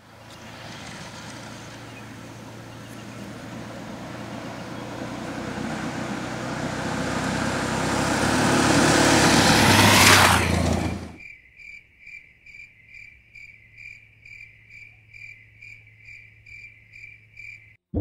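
A vehicle on a dirt road, its noise building for about ten seconds as it approaches and peaking as it passes close, then cut off abruptly. After that an insect chirps in a steady rhythm of about two chirps a second over a faint low hum.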